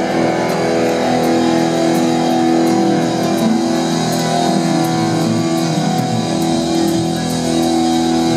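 Live rock band playing an instrumental passage: guitar over keyboards and a drum kit, with steady sustained chords and frequent cymbal ticks on top.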